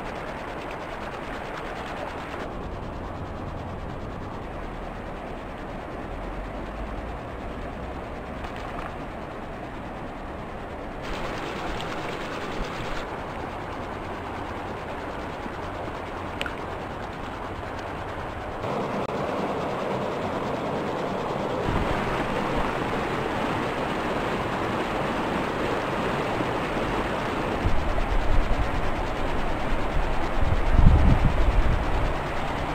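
A mountain creek rushing over rocks through shallow riffles: a steady rush of water that gets louder in the second half.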